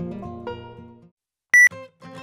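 Background music with sustained notes fades out over the first second, then there is a short silence. About one and a half seconds in comes one short, loud electronic beep, the tick of a film-leader-style countdown.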